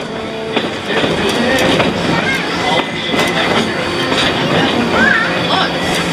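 A 3 ft gauge passenger train rolling along, its wheels rumbling and clattering steadily on the rails as heard from on board, with voices of passengers chattering over it.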